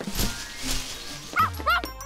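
Cartoon background music with sound effects: a rustling hiss in the first second, then two quick, pitched, yelping cartoon-character vocal sounds near the end.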